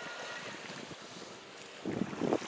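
Strong wind blowing across a sandy beach and rushing on the microphone, with surf from the sea behind it.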